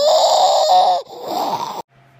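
A baby's loud, high-pitched vocalization that glides up in pitch and is held for about a second, followed after a short break by a second, shorter call. The sound cuts off abruptly just before the end.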